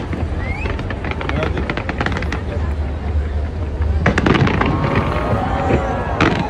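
Large fireworks display going off in rapid crackles and bangs over a steady low rumble, with a louder cluster of bangs about four seconds in.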